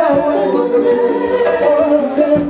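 Live Congolese band music with a man singing into a microphone, held notes over a steady, quick cymbal beat.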